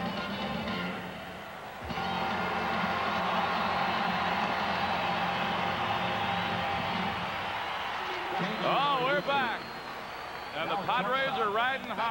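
Music on the stadium PA, which ends about two seconds in, followed by a large ballpark crowd cheering and applauding. Near the end come several swooping, high-pitched sounds.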